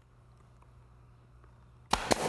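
A nail gun fires once near the end with a sharp crack, fastening a joint in a wooden railing panel. Before it there is only a faint steady low hum.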